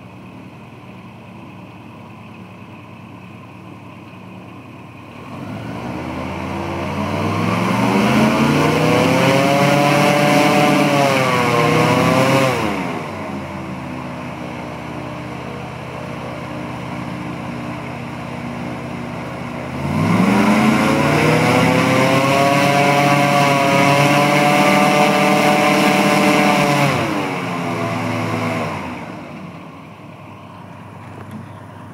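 Airboat engine and propeller idling, then revved up twice, each time for several seconds, as the boat is powered up onto its trailer, dropping back to idle between the two revs and at the end.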